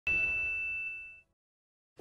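A single bright bell-like chime from a TV show's intro, struck once at the start with a clear high ringing tone. It fades out in just over a second.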